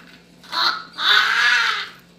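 A boy laughing loudly with his head thrown back: a short cry about half a second in, then one long drawn-out shriek lasting nearly a second.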